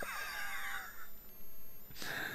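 A man's quiet, breathy laugh in the first second, with faint falling wavering tones, then faint room tone.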